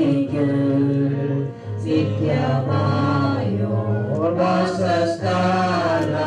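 A group of voices singing a slow hymn, with long held notes.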